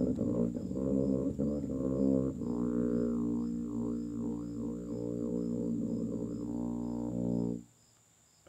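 Tuba playing a run of short low notes, then holding one long low note whose upper tones waver up and down, before cutting off just before the end.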